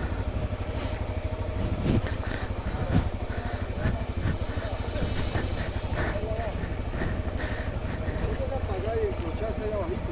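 Honda XRE300's single-cylinder engine running at low revs, a steady rapid low pulse, as the bike rolls slowly over loose, slippery rocks. A few short knocks come through in the first half.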